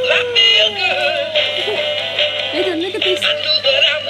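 Animated plush puppy toy singing a song in a synthetic voice over music through its small speaker, set going by a press of its paw. The sound is thin and tinny, with the sung melody sliding up and down.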